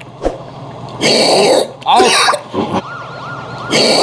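A man coughing and hacking hard twice, trying to clear a fish bone stuck in his throat. A wailing siren sound effect comes in partway through and repeats.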